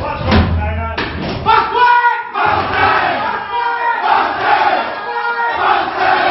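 A rugby league team chanting their after-game victory song together: many men's voices shouting in unison, with heavy thumps in the first second.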